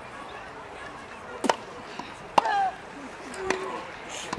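Tennis ball struck by rackets in a rally on a grass court: three or four sharp pops about a second apart. The loudest pop is followed at once by a short vocal grunt from the hitter.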